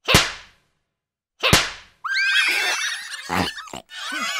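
Two sharp cartoon whip cracks, about a second and a half apart, each dying away quickly. About two seconds in they give way to a busy flurry of high, squeaky cartoon chirps and whistles.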